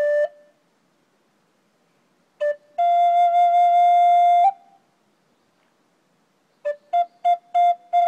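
Butch Hall Native American flute in G minor playing a slow, pausing melody. A held note ends just after the start; after a pause, a quick grace note leads into a long held note that bends up slightly as it ends. After another pause, a run of about five short separate notes leads into a new held note near the end.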